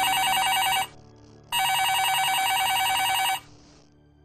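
Telephone ringing with a trilling electronic ring, an incoming call. One ring ends within the first second, and after a short pause a second ring of about two seconds follows.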